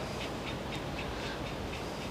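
Quiet room tone with faint, even ticking, about four ticks a second.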